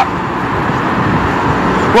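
Steady road traffic noise, a vehicle's even rushing hum with no distinct tones or knocks.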